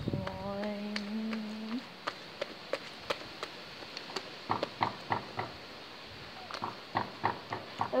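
A drawn-out vocal "aaah" for about two seconds, then sticky slime being handled: a run of irregular small clicks and soft pops and taps.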